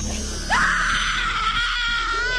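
A long, high-pitched scream that starts suddenly about half a second in and is held at a steady pitch: a staged horror scream, with music faintly underneath.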